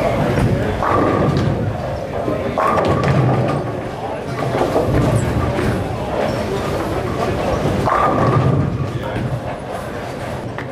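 Bowling alley din: balls rolling and thudding on the lanes and pins crashing on nearby lanes, under constant background chatter from the bowlers.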